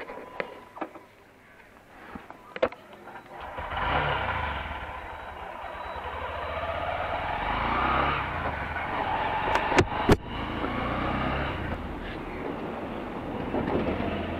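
Motorcycle pulling away and riding along a street. A few light clicks and knocks come first. About three and a half seconds in, the engine's rumble and wind noise start suddenly and carry on steadily, and a couple of sharp knocks come near ten seconds.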